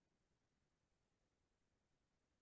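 Near silence: a pause with only a faint noise floor.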